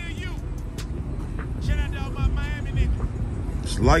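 Voices talking in the background over a steady low rumble, with a man starting to speak near the end.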